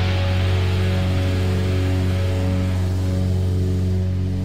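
Closing chord of a punk-rock band held and ringing out on electric guitar and bass, steady, with the bright top end slowly dying away.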